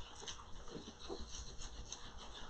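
Faint, irregular rubbing of a small pad in circles over a sheet of transfer foil on a textured purse, pressing the foil into the texture where the metal has not yet transferred.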